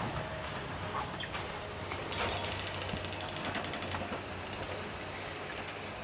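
Outdoor street background: a steady low hum under a faint even hiss, with a few light ticks.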